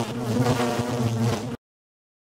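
Buzzing-fly sound effect on the channel's logo sting: a steady, slightly wavering buzz that cuts off suddenly about one and a half seconds in.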